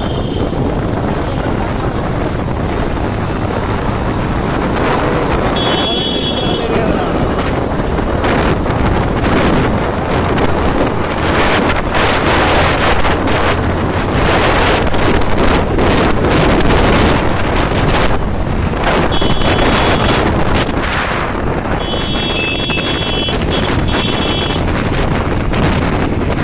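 Wind buffeting the microphone on a moving motorcycle, over the bike's engine and road noise in city traffic. Short high horn beeps sound about six seconds in and twice more near the end.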